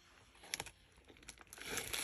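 Crinkling of a plastic poly mailer bag as a hand rummages inside it, with a light tap about half a second in and the rustling growing louder near the end.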